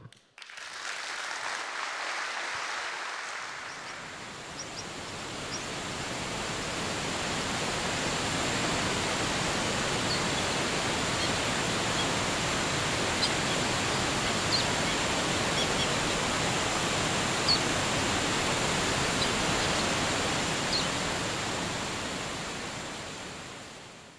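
Steady rushing-water ambience of a waterfall, with a few short, faint high chirps scattered through it; it fades out near the end.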